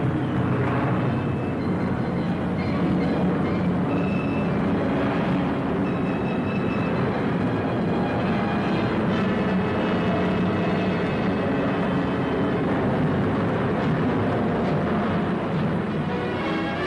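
Four-engined Lancaster bomber's engines droning steadily through the cabin as it comes in to land, with thin high ringing tones entering in the second half.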